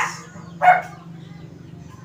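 Karaoke speaker's microphone echo: one short repeat of the last spoken syllable comes through the speaker about two-thirds of a second in, the sign that the repaired mic channel is working with its delay effect on. A steady low hum from the speaker's amplifier runs underneath.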